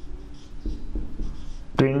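A marker pen writing on a whiteboard, in a run of short, separate strokes.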